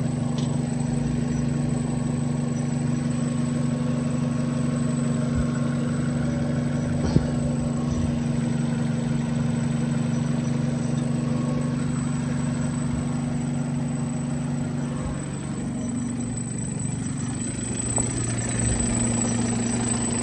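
Nissan Almera N16's 1.5-litre petrol four-cylinder engine idling steadily, with one sharp click about seven seconds in and a slight change in its tone after about fifteen seconds.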